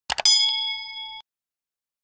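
Animation sound effect for a YouTube subscribe button: two quick mouse clicks, then a bright bell ding that rings for about a second and cuts off suddenly.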